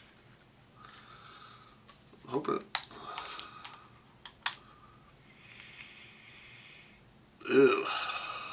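The plastic twist-off cap of a small Pom Wonderful pomegranate juice bottle being unscrewed by hand: a cluster of sharp clicks and crackles a few seconds in.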